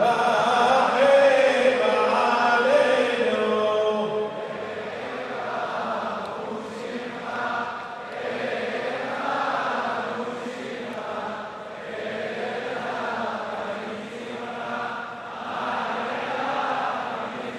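A crowd of voices chanting Selichot, Jewish penitential prayers, in Hebrew. The singing is clearest and loudest for the first four seconds, then carries on as a looser mass of voices rising and falling in swells.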